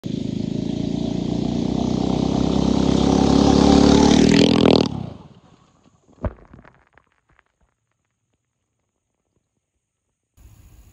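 A 79cc Predator single-cylinder four-stroke gas engine in a Power Wheels Jeep, running loudly and revving up with rising pitch. It cuts off abruptly just before the halfway point. About a second later there is a single knock, then silence.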